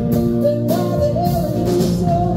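Live acoustic-electric band music: a woman singing lead over electric guitar, mandolin, ukulele, upright bass and a drum kit keeping a steady beat.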